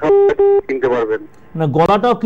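Two short electronic telephone beeps, each about a quarter second long with a steady pitch, heard over the phone-in line, followed by speech.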